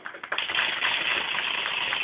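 Crowd applauding, a few scattered claps swelling into steady applause about half a second in.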